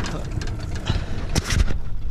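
Outboard motor running at slow trolling speed, a steady low rumble, with a few sharp clicks about a second and a half in.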